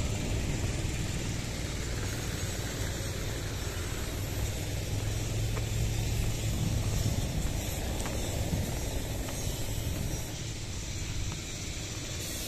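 Small petrol go-kart engine running on the track below, a steady low drone with a hum that holds for a few seconds in the middle.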